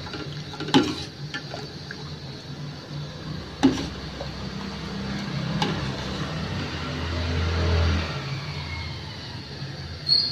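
Steel ladle stirring thickened milk in a stainless steel pot: liquid swishing, with a few sharp knocks of the ladle against the pot, the loudest a little before four seconds in. A low steady hum runs underneath and swells briefly near the end.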